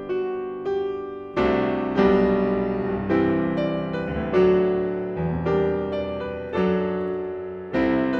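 Grand piano playing a slow chord sequence. A new chord is struck about every half second to a second and rings and fades until the next. The playing grows louder about a second and a half in.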